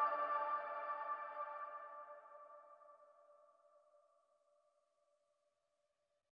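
The closing sustained chord of an electronic dance track, ringing out and fading steadily until it dies away about four seconds in.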